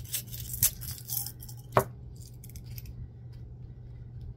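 Small seashells clinking against a glass jar as they are handled, with a sharper clink a little under two seconds in as a small glass jar is set down on the table. A steady low hum runs underneath.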